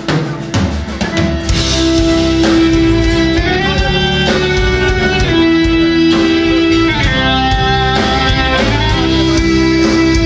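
Live metal band playing the instrumental opening of a song, with guitar and drum kit over long held notes. It swells up in the first second, then runs loud and full.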